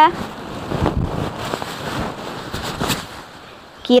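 Rustling of a Bogaboo Sharga sleeping-bag jumpsuit's puffy micro-polyester shell as it is pulled on over the arms and shoulders. The swishes come irregularly and fade toward the end.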